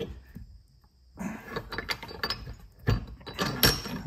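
Steel chain links and a hook clinking against a cast-iron bench vise as they are handled. The sound is quiet for about the first second, then comes a run of metal clinks with two sharper knocks, about three seconds in and again shortly before the end.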